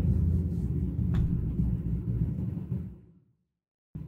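Low outdoor rumble, like wind on a field microphone, with one faint click about a second in; it fades out about three seconds in.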